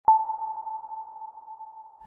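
A single electronic ping used as an intro sound effect: a sharp attack, then one steady pure tone that fades away slowly over about two seconds.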